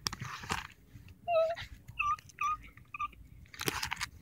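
Plastic binder sleeve pages crinkling as a page of cards is turned, once at the start and again near the end. In between come a few short high-pitched tones.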